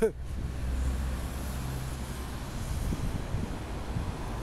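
Steady low rumble of city street traffic, with buses and cars moving along the street and a faint engine hum under it for the first couple of seconds.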